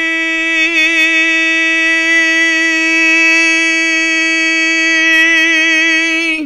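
A male singer holding one long, high note, steady in pitch, with a slight vibrato near the end. It is a controlled sustained note, not a strained shout.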